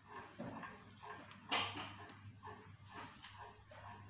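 A dog whimpering in short repeated sounds, with one louder, sharper cry about a second and a half in, over a low steady hum.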